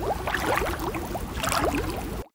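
Water bubbling and trickling: a dense, continuous run of small rising plinks and gurgles.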